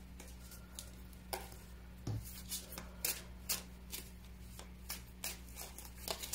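Tarot deck being shuffled by hand, the cards making short, crisp strokes about twice a second, over a low steady hum.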